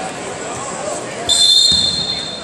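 A wrestling referee's whistle blown once, about a second and a half in: a loud, shrill, steady blast lasting under a second, the signal to restart the bout after a reset. A dull thud comes near its end.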